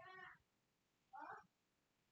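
Faint background voice: a phrase trails off, then one short, high-pitched call about a second in.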